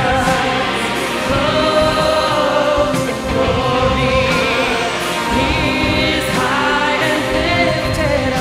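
Large church choir singing a gospel-style worship song in full voice over orchestral accompaniment, with steady sustained chords throughout.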